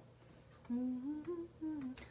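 A woman humming a short phrase in held notes that step up and down in pitch, starting about a third of the way in after a moment of quiet room tone.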